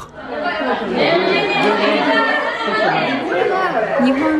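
Chatter of many high-school girls' voices overlapping in a classroom.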